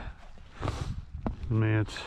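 A man's short wordless voice sound, a held hum or grunt, about one and a half seconds in. Before it comes soft rustling with a single tick from moving about on grass.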